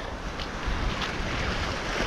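Small waves washing and foaming over seaweed-covered shoreline rocks, a steady wash of surf, with low wind rumble on the microphone.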